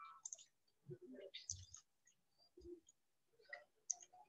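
Near silence broken by faint scattered clicks and a couple of soft low thumps, about one and a half and two and a half seconds in.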